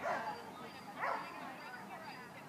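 Dog barking twice, about a second apart, while running an agility course.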